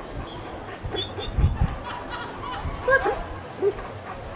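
A German shepherd giving a few short yelps, the loudest about three seconds in and another just before the end, with a dull low thump about a second and a half in.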